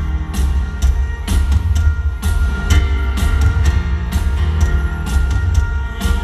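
Live rock band playing through an arena sound system: drum kit with a steady beat of about two hits a second over bass, electric guitar and piano.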